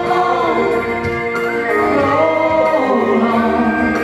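A woman singing a country song live into a microphone over instrumental accompaniment, holding long notes that slide in pitch.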